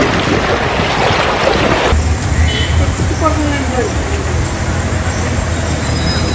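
Outdoor field sound of people's voices over a dense rushing noise. About two seconds in the sound changes abruptly to a steady low rumble with faint, distant voices calling over it.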